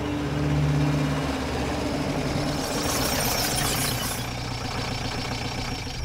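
Hindustan Ambassador car's engine running low and steady as the car pulls up and stops, with a brief rush of noise about three seconds in.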